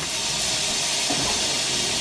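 A steady, even hiss.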